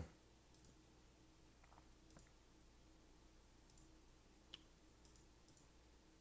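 Near silence with a few faint, scattered clicks of a computer mouse, the sharpest about four and a half seconds in.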